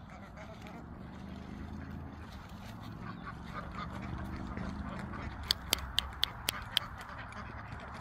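A flock of domestic ducks quacking on a pond as a dog herds them. A quick run of about six sharp clicks comes a little after five seconds in.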